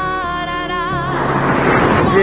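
Background music with a singing voice; about a second in it gives way to loud wind buffeting the microphone of a camera on a moving bicycle.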